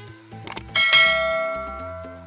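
A few quick mouse-click sounds, then a bright bell ding that rings out and fades over about a second: a subscribe-button and notification-bell sound effect, over background music with a low bass line.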